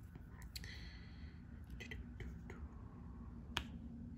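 Faint, scattered small clicks and taps of resin diamond-painting drills being pressed onto the canvas with a drill pen. The sharpest tap comes about three and a half seconds in.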